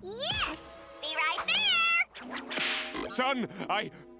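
Cartoon sound track of high cries that slide up and down in pitch, one rising sharply right at the start and more between one and two seconds in, with lower bending cries near the end and music underneath.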